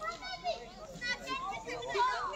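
Voices of several people outdoors, including children's high voices, talking and calling out over one another.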